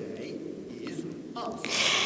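A pause in speech with faint low background sound, then about one and a half seconds in a hissing in-breath taken just before speaking resumes.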